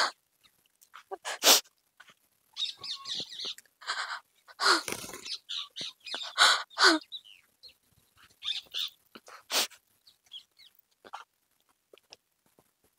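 A woman crying: irregular short sobbing bursts, a few of them breaking into a brief falling wail.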